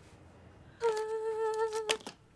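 A woman humming a tune, holding one long note with a slight wobble, with a sharp click just before it stops.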